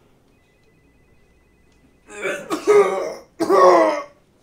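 A man loudly clearing his throat with a hacking cough, in two bursts starting about two seconds in.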